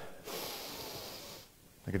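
A man taking one deep breath in, close on a clip-on microphone: a hissy inhale lasting just over a second.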